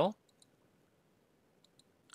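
Faint computer mouse clicks against near silence: a quick pair about half a second in and a few more near the end, as a drop-down option is picked.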